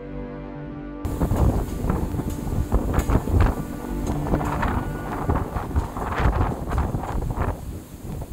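Music until about a second in, then strong gusty storm wind buffeting a phone's microphone, loud and ragged.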